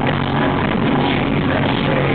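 Rock band playing live through a PA, with electric guitars, bass and drums, loud and unbroken.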